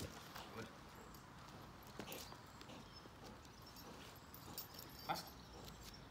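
Faint, scattered footsteps on brick paving from people and a dog walking, with a few sharper knocks, the loudest just after five seconds in.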